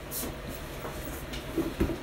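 Faint handling noise from a cardboard product box being lowered and turned over, with a soft low thump near the end.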